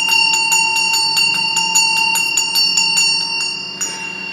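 Small brass hand bell shaken steadily, its clapper striking about six times a second over a sustained ringing tone. The strikes stop near the end and the bell rings on.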